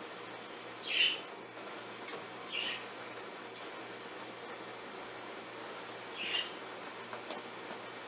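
Three short high chirps, about one, two and a half, and six seconds in, over a steady low hum and hiss.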